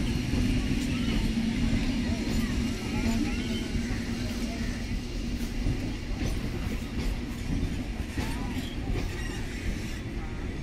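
Indian Railways electric local train running past, its wheels rumbling steadily on the rails with scattered clicks.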